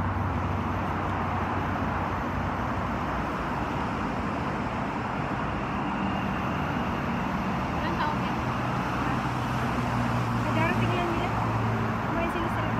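Steady city traffic noise, an even rumble and hiss, with faint talking mixed in, the voices a little clearer near the end.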